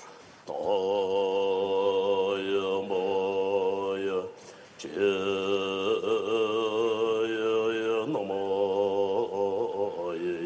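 Buddhist prayer chanting in long, drawn-out held notes with a slightly wavering pitch, broken by short pauses just after the start and again around four seconds in.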